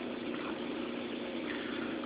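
Saltwater aquarium's aerator and filtration running: a steady wash of bubbling air and moving water.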